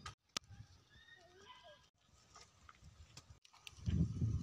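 Quiet outdoor ambience with a sharp click near the start and a few faint, short animal calls about a second in.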